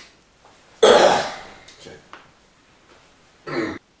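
A man coughing and clearing his throat hard about a second in, loud and sudden, then dying away. A shorter vocal burst follows near the end.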